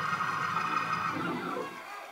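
Congregation voices calling out in praise over a held music chord, fading near the end.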